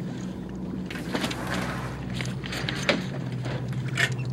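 Steady drone of a propeller plane's engines heard inside the cabin. A brief hiss about a second in, and a few sharp knocks of things being handled, the loudest near the end.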